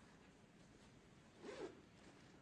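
Near silence, broken by one brief rasping rustle about one and a half seconds in.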